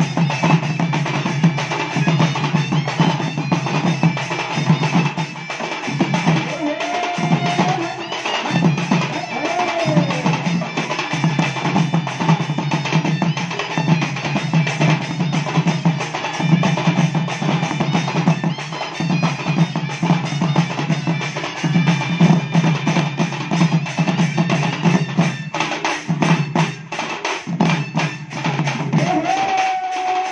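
Western Odisha folk band music: dhol drums beaten in a fast, driving rhythm under a high, reedy muhuri melody, with the drum strokes getting sharper near the end.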